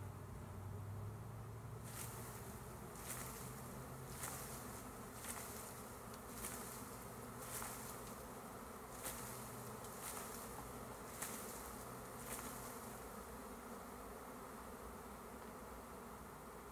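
Honey bees buzzing steadily around a disturbed colony. About ten short swishes of almond leaves, roughly one a second, from about two seconds in to twelve seconds in, as the branch holding the bees is shaken.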